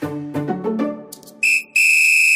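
Music notes die away, then a shrill, steady whistle tone sounds: a short blip and then a longer held note near the end.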